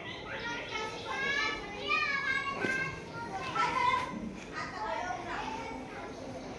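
Children's voices chattering and calling out, high-pitched and continuous.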